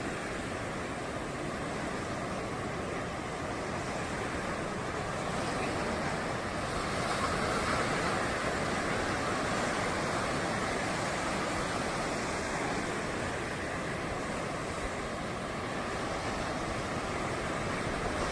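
Sea surf breaking and washing up a sandy beach: a steady rush of waves that swells a little around the middle.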